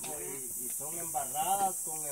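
A steady, high-pitched insect chorus hisses throughout, with quiet talking in the background about halfway through.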